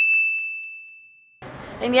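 A single bright ding sound effect: one clear, high bell-like tone that starts sharply out of dead silence and fades away over about a second and a half. Speech comes back in near the end.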